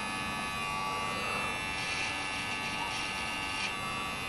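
Cordless electric hair clippers running steadily while cutting hair at the side of the head, near the temple.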